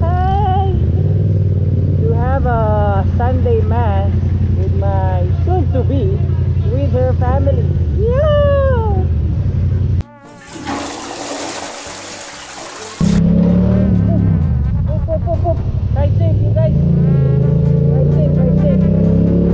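Yamaha MT-07's parallel-twin engine running at low speed in traffic, with a singing voice over it. About ten seconds in it breaks off for about three seconds of hissing, rushing noise. Then the engine sound returns and rises in pitch as the bike picks up speed.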